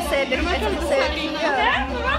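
Chatter: several people's voices talking over one another, with no single clear speaker.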